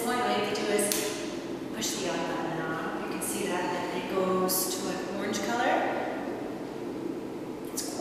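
A woman speaking in a steady explanatory narration.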